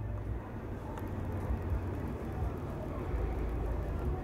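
Low, steady rumble with faint hiss, at a moderate level: background noise with no distinct events.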